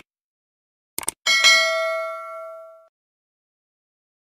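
Subscribe-button animation sound effects: a quick double mouse click about a second in, then a single bright bell ding that rings out and fades over about a second and a half.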